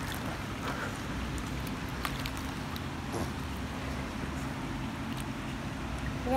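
Light water splashing and lapping as a man in a life jacket paddles in a swimming pool on a ring buoy, over a steady low hum.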